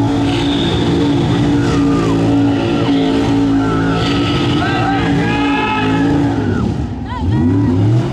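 Pickup truck doing a burnout: the engine is held at high revs while the rear tires squeal against the pavement. Near the end the engine drops briefly, then revs back up with a rising pitch.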